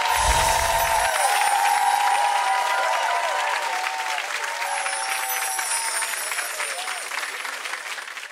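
Studio audience applauding, with music under the opening second, fading down near the end.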